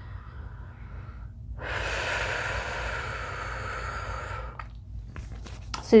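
A woman breathing audibly as she comes out of a breathwork breath hold: a faint short breath, then one long, even breath lasting about three seconds.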